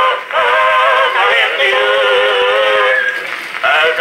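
Edison Red Gem Model D cylinder phonograph playing a two-minute cylinder record: a vocal quartet sings in harmony through the horn, holding one long chord, thin-sounding with no bass. The voices stop briefly near the end and then come back in.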